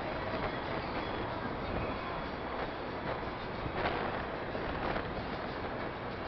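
Heavy rain of a thunderstorm, a steady, even rushing hiss.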